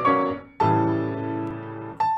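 Solo piano playing a comic quadrille: a phrase dies away into a brief pause, then about half a second in a full chord is struck and held, fading slowly until it is released near the end.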